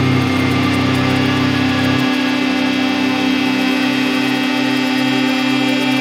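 Instrumental drone doom metal: a fuzz-distorted electric guitar in drop-C tuning holding long sustained notes, with a slow pulsing in the low notes. About two seconds in, the deepest bass note drops out and the higher drone carries on.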